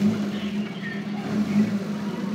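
Steady low drone of a tour boat's motor running, with faint chatter from passengers.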